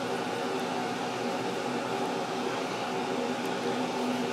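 Steady whirring noise of a room fan with the air conditioning running, with a constant low hum under it.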